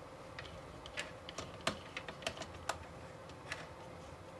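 Faint, irregular small clicks and ticks, about ten in four seconds, from a small screwdriver working a tiny screw and parts as the front windscreen is fitted to a large-scale model car.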